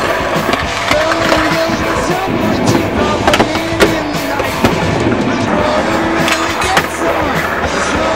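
A music soundtrack with a melody, over skateboard wheels rolling on concrete and a few sharp clacks of the board landing and hitting the ground.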